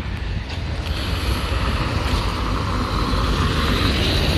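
Wind buffeting the phone's microphone outdoors: a steady, loud low rumble with an even hiss of street noise over it.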